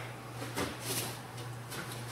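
Faint rustling and soft scuffs of a person getting up off a vinyl-covered gym mat and stepping on it, over a steady low hum.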